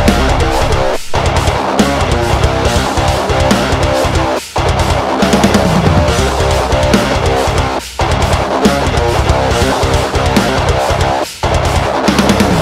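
Electric guitar (ESP LTD EC-256) playing a heavy, distorted metal riff through the free Metal Area MT-A amp-simulator plugin, with low chugging notes. The riff breaks off briefly about every three and a half seconds.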